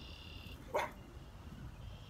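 A dog barks once, short and sharp, a little under a second in. Under it is a steady high buzz that stops just after the bark begins.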